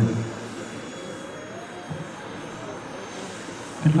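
Faint, steady drone of a distant aircraft engine, with a slight rising tone partway through.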